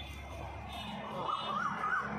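Siren sounding in short, quick rising-and-falling sweeps, three in a row in the second half, over a low steady hum.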